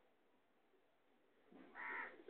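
Near silence, then near the end a single short, loud animal call.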